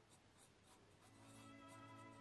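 Faint scratching of a 2 mm mechanical pencil with 2B lead as it lightly sketches a small circle on sketch paper. Soft background music with held notes comes in about a second in.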